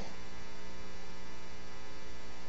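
Steady electrical mains hum with a dense ladder of evenly spaced overtones, the background hum of the sermon recording.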